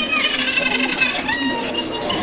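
A shower of coins dropping and clinking together: a dense, rapid patter of small metallic clicks with short ringing tones.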